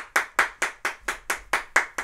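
Hand clapping, an even run of single claps at about five a second, welcoming a guest.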